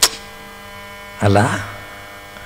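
Steady electrical mains hum on the lecture-hall recording. A sharp click comes right at the start, and a man's voice gives a short syllable about a second in.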